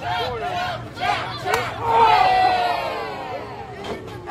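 Wrestling crowd shouting, with a sharp smack about a second and a half in. Right after it the crowd lets out a loud collective "ooh" that falls in pitch and fades.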